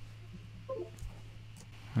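Steady low electrical hum with a brief faint pitched sound about three-quarters of a second in and a small click just after.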